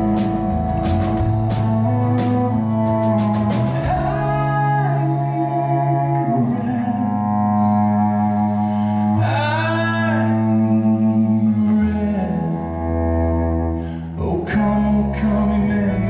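Live band playing a slow song: acoustic guitar, electric guitar, cello and drums, with a male voice singing. The music drops briefly near the end, then the drums come back in.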